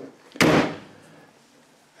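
Door of a 1960 Saab 96 being shut once, a single sharp closing about half a second in that rings out briefly.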